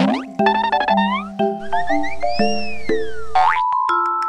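Playful children's background music with cartoon sound effects: a quick upward sweep at the start, a run of short rising chirps, a long whistle-like tone that rises and falls in the middle, and another upward sweep near the end.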